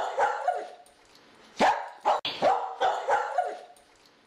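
A dog barking in a quick series of short, yipping barks, in two bouts with a brief pause between them.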